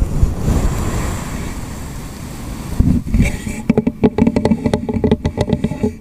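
A cup rubbed and scratched against a fuzzy microphone windscreen, giving a close, dense rumbling scrape. From about halfway it gives way to rapid fingertip tapping on the cup's side, with many quick hollow taps a second.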